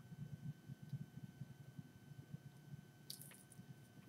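Near silence: faint room tone, with one brief soft hiss about three seconds in.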